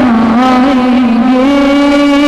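A boy's voice singing a naat through a microphone and loudspeakers, holding one long note that steps up in pitch about one and a half seconds in.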